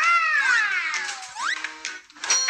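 A long meow-like cry that rises, then slowly falls, followed by a short rising cry, over background music.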